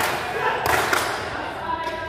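A volleyball thumping as it is struck and hits the court floor in a large gym hall, a few sharp thumps in the first second.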